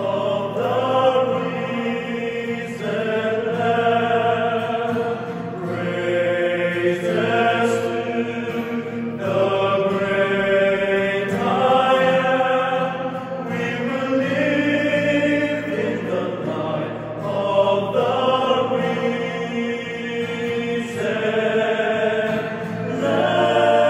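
Male vocal ensemble singing in harmony, accompanied by acoustic guitar, the chords held and changing every second or two.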